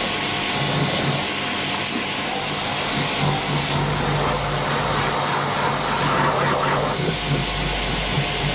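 Pressure washer running, a steady low hum under the hiss of its water jet blasting the inside of a car's front wheel well.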